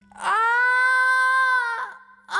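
A baby crying: one long wail that rises at the start, holds steady for about a second and a half and falls away near the end.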